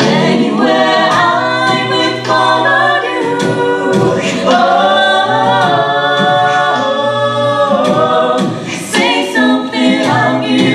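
Five-voice mixed a cappella group singing a slow ballad in close harmony, with layered sustained voices over a held bass line.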